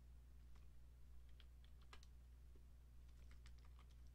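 Faint, scattered keystrokes on a computer keyboard: a single click, then a small group, then a quicker cluster near the end, over a steady low hum.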